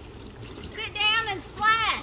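Faint steady trickle and splash of a small splash-pad sprinkler jet spraying into a shallow inflatable pool, with a high voice calling out twice, about a second in and again near the end.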